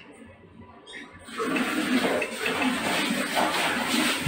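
A steady rushing, water-like noise comes in about a second and a half in, after a near-quiet start, and keeps going.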